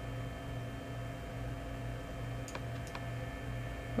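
Steady background hum and hiss from the recording setup, with a low hum that pulses evenly, and two faint computer mouse clicks about two and a half and three seconds in.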